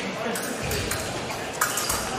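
Fencing-hall ambience: voices carrying across a large sports hall, with a sharp click about a second and a half in.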